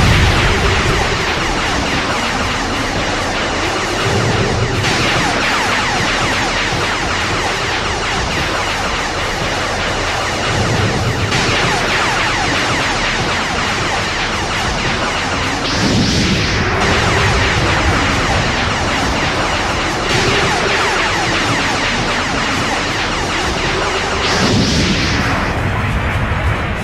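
Dramatic background music layered with continuous energy-blast and explosion sound effects from an anime fight, a dense rushing noise that swells briefly about 16 and 25 seconds in.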